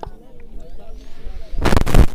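A single sharp click at the start, then about a second and a half in, a loud burst of rapid crackling pops, several a split second apart.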